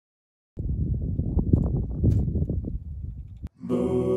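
Wind buffeting an outdoor microphone in low, rumbling gusts. It starts half a second in and cuts off about three and a half seconds in. Music with sustained, voice-like chords starts just before the end.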